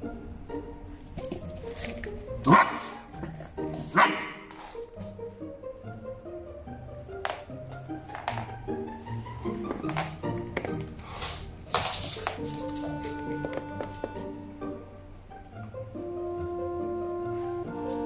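Background music with held notes runs throughout. Over it a Shiba Inu gives two short barks, about two and a half and four seconds in, with another brief sound near twelve seconds.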